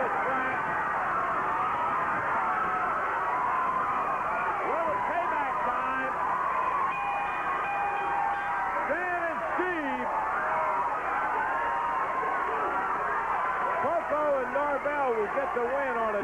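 Studio wrestling crowd yelling and screaming, many high and low voices overlapping at a steady level throughout.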